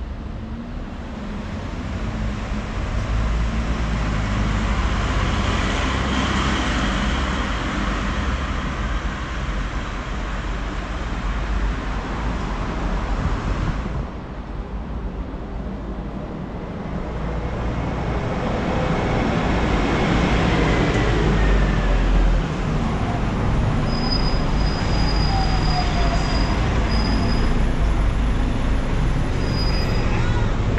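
Road traffic on a town street: vehicles, buses among them, passing close by in two long swells of engine and tyre noise, over a steady low rumble.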